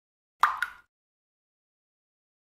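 A water drop plopping into still water: a sharp plip with a second, smaller plip right after it, dying away within half a second.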